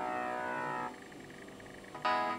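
Samsung GT-E1200M mobile phone ringing with its polyphonic ringtone for an incoming call: a held chord fades away, and about halfway through the music drops to a quieter lull in the melody.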